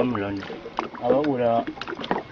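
Speech: a man talking in a low-pitched voice.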